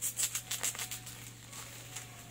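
Bubble-wrap packaging crinkling and rustling as it is pulled off a bicycle rim: a quick run of sharp crackles in the first second, then softer rustling.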